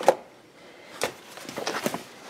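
Vehicle seat belt webbing and its metal latch plate being threaded through a car seat's belt path by hand: a sharp click at the start, another about a second in, then light clicking and rustling.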